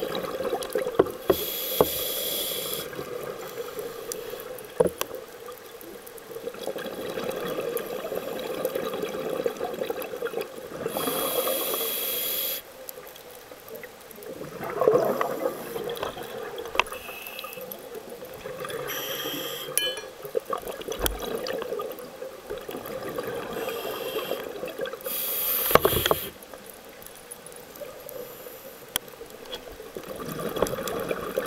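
Underwater sound on a scuba dive: divers' regulators releasing loud bursts of exhaled bubbles several times, the loudest about a second long, over a steady watery hiss with occasional sharp clicks.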